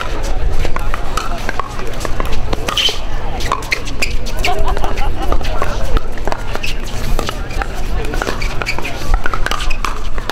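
Pickleball paddles striking the hard plastic ball in a doubles rally, a string of sharp pocks, over the chatter of spectators.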